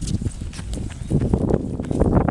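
Footsteps on a paved path with low, irregular rumbling of wind on the microphone, growing louder and rougher a little past a second in.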